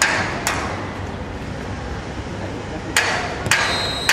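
Sharp knocks, two close together in the first half second and two more about three seconds in, each about half a second apart, over steady low background noise.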